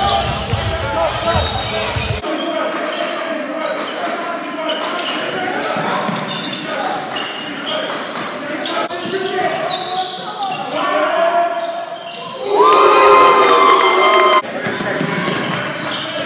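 Basketball game sound in a gym: a ball bouncing on the hardwood court among players' and spectators' voices echoing in the hall. Near the end a loud held tone rings out for about two seconds.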